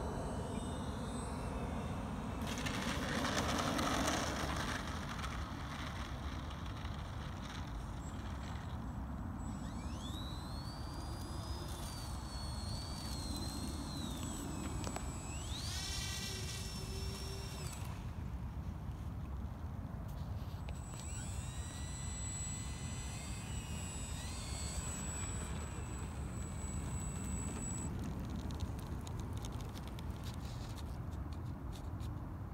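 Twin propeller motors of a radio-controlled OV-10 Bronco model landing and taxiing. A loud rush of noise comes a few seconds in, then high motor whines that rise, hold and fall several times as the throttle changes.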